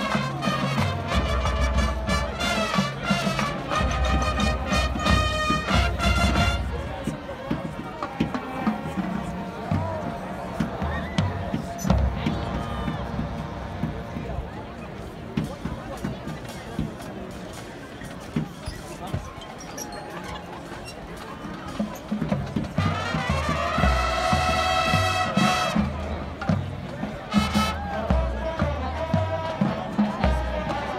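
Band music with loud, held notes over a heavy low end. It drops to a quieter stretch of crowd noise and scattered sounds after about six seconds, then the music comes back strongly in the last third.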